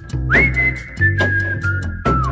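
A woman whistling a tune in long held notes: the first swoops up to a high note about a third of a second in, then the notes step downward. It plays over background music with a bass line and a steady beat.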